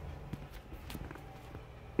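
A few faint, scattered clicks and taps.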